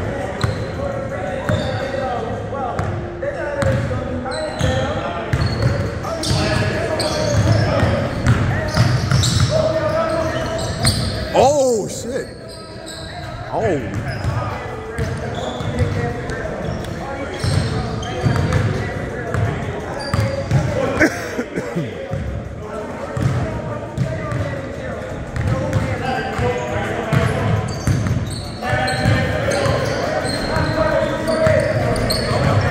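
A basketball being dribbled and bounced on a hardwood gym floor during a pickup game, with sneakers squeaking briefly a few times, in a large echoing gym.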